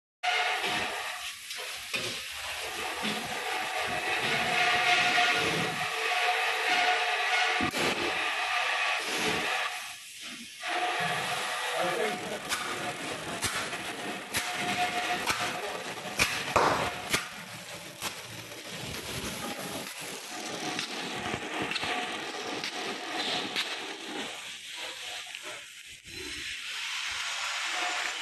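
Horizontal flow-wrapping machine running as it seals bread into air-inflated film packs: a steady mechanical hum and hiss, broken by sharp clicks.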